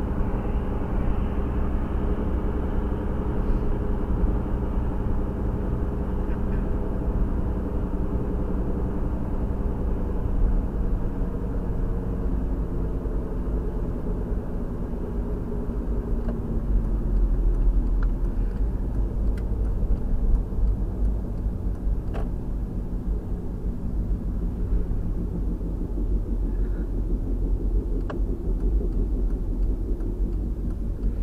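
Car driving, heard from inside the cabin: a steady low engine and road rumble, with the engine tone falling away in the second half as the car slows down.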